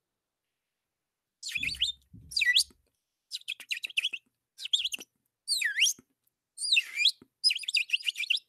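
Bird song: a run of high chirps and whistled phrases with quick down-slurred notes and short trills, starting about a second and a half in and repeating in groups.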